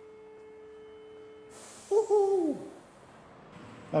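A short wordless "hoo" from a man's voice, falling in pitch, about halfway through, over a hiss that starts just before it and lasts about two seconds. A faint steady hum is under the first half.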